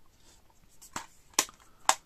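A metal steelbook Blu-ray case being closed and handled: three sharp clicks, about a second in, then a louder one and another just before the end.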